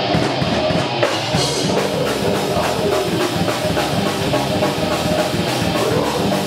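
Live death metal band playing: distorted electric guitars and bass over fast, dense drumming.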